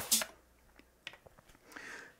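Electronic dance track playing through the XDJ-RX2 cuts off abruptly just after the start. Near silence follows, with a few faint clicks.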